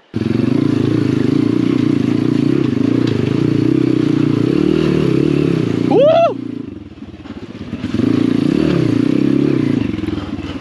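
Apollo RFZ 125cc dirt bike's single-cylinder engine running under throttle on a rocky trail, starting abruptly. About six seconds in, a short shout rises and falls in pitch, and the engine drops off for over a second before picking back up.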